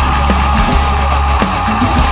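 Instrumental passage of an alternative rock-metal song: drum kit, bass and electric guitars playing loud and steady, with a held high note over the beat.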